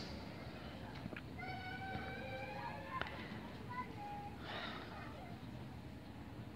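Quiet room tone with a faint, high-pitched vocal sound in the background about a second and a half in, and a few light clicks.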